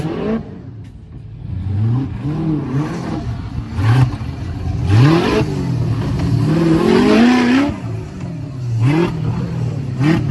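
Off-road buggy engine revving in repeated throttle bursts as it climbs a muddy bank, the pitch rising and falling with each blip, with one longer high rev about six to eight seconds in.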